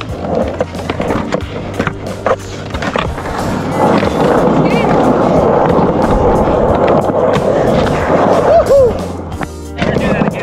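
Skateboard wheels rolling over a concrete skate park surface. The rolling gets much louder from about four seconds in as the board picks up speed, with a couple of sharp clacks of the board before that.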